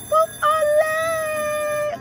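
Slot machine's bonus-trigger sound as three bonus symbols land and award free games: a short blip, then one long, steady, voice-like note held for about a second and a half.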